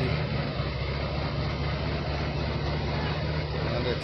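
Diesel truck engine running steadily with a low drone, under heavy load while the truck is bogged in deep mud.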